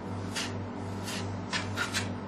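Flat scraper spreading tile cement across a painted wooden board: several short rasping scrape strokes.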